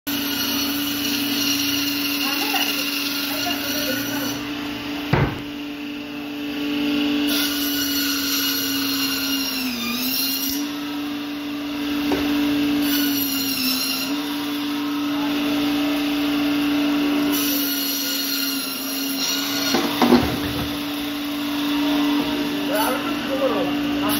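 Electric band saw running with a steady hum, its pitch sagging briefly twice as the blade is loaded cutting through a large katla (catla) fish. There is a sharp knock about five seconds in and a couple more near the end.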